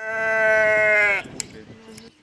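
A sheep bleating once: one long, steady call of just over a second that drops in pitch as it ends, followed by a single short click.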